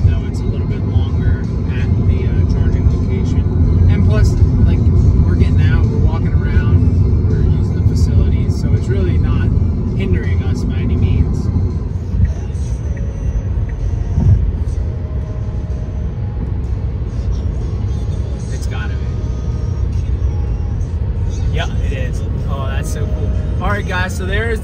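Steady road and tyre rumble inside a Tesla Model 3's cabin at highway speed, easing slightly about halfway through. Faint music and voices sit underneath.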